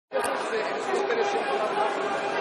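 Crowd of demonstrators chattering, many voices overlapping at once, cutting in suddenly from silence just after the start.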